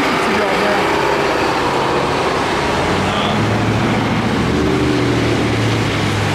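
City street traffic noise, with a vehicle engine humming steadily through the second half.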